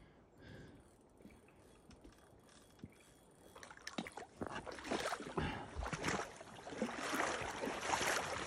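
Irregular splashing and sloshing of shallow river water, starting about three and a half seconds in, from an angler wading in chest waders while a hooked fish is played close in.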